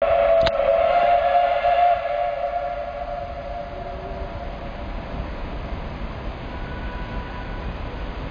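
A train in a station track yard giving a long, steady high tone that is loudest for about two seconds and then fades away over the next three, over a steady rail-yard rumble. A sharp click comes about half a second in.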